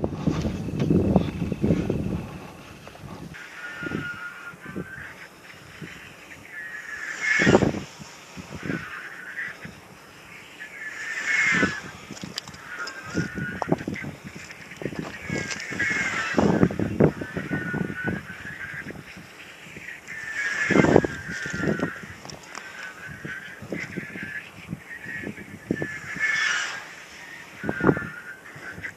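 Radio-controlled glider dynamic soaring in repeated laps: a whistle from the airframe rises and falls as it circles, with a loud rushing whoosh each time it sweeps close past, about every four to five seconds, five times in all. Wind buffets the microphone at the start.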